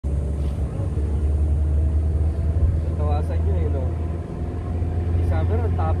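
Motor vehicle engine running steadily while driving along a road, heard from inside the vehicle as a low, constant drone. Voices speak briefly about halfway through and again near the end.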